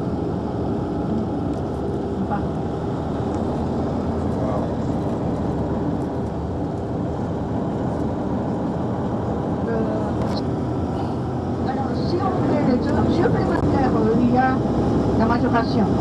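Cabin of a moving tour coach: steady low engine and road rumble. Voices talk indistinctly over it, mostly in the second half.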